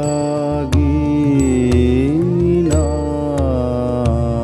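Rabindrasangeet sung by a man in long held notes that glide up and down, with a new phrase coming in about three-quarters of a second in. Tabla and mandira hand cymbals keep a steady rhythm under the voice, with melodic instrumental accompaniment.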